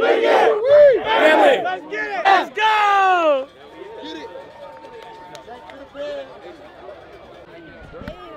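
A group of football players and coaches shouting a loud cheer together, many voices at once, for about three and a half seconds. The last shout is drawn out and falls in pitch. Quieter scattered talk and chatter follow.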